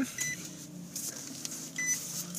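2013 Nissan Murano's 3.5-litre V6 starting by push-button: a brief start at the very beginning, then settling into a steady low idle. The car's chime beeps twice, about a second and a half apart.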